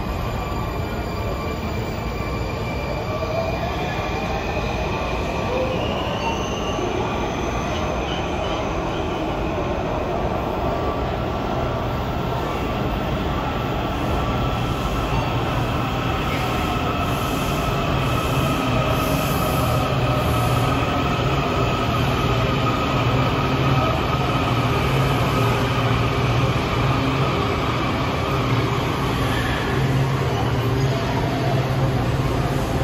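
Washington Metro railcars moving through an underground station: an electric motor whine that glides in pitch, with squealing wheels. It grows louder in the second half, with a low rumble, as a train comes alongside the platform.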